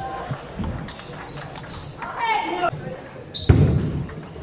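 Table tennis ball being struck back and forth in a rally, sharp clicks of ball on paddle and table in a large hall with voices around it. A louder, heavier thump comes near the end.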